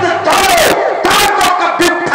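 A man's loud, drawn-out shouted cries through a microphone and PA loudspeakers: a stage actor playing Ravana bellowing in character.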